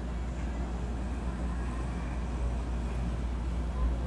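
Steady low rumble and hum of background room noise picked up by a phone microphone, with no distinct events.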